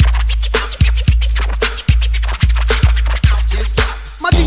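Miami bass hip-hop track: a deep, long-sustained bass drum beating under turntable scratching, with no vocals.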